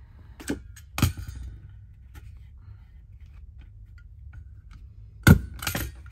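A clear plastic desk stapler driven through a layered paper craft tag: one sharp snap about five seconds in, the loudest sound, with a second click right after. Two lighter knocks come within the first second, with faint small ticks between.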